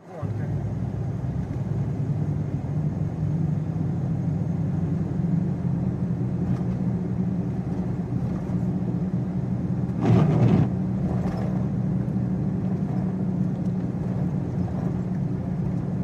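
Steady low engine and road drone inside a moving car's cabin, on wet roads. About ten seconds in, a brief louder sound rises over it.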